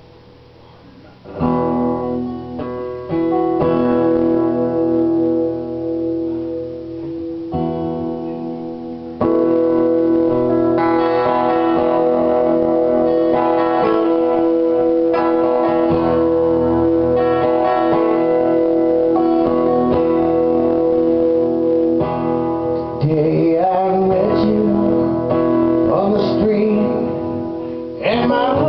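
Acoustic guitar strummed as the intro of a song, starting about a second in. A man starts singing along near the end.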